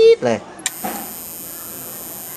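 An old Toshiba CRT television powering up: a click, then a steady, very high-pitched squeal ('jeed') from the set's circuitry starts about half a second in and holds. The squeal is the sign of the power supply being loaded down ('ไฟมันโหลด'), which the technician takes for a short, possibly in the flyback transformer of this long-used board.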